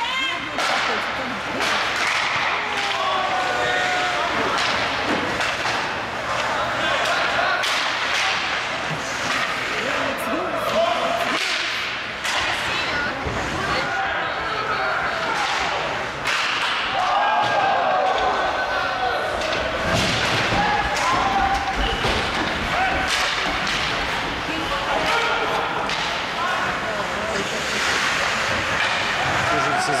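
Ice hockey play in a rink: repeated sharp knocks and slams of sticks, puck and boards, with indistinct shouts and calls from players and onlookers throughout.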